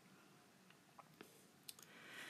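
Near silence with a handful of faint, short clicks, most in the second half, from hands handling paper stickers and pressing them onto a planner page.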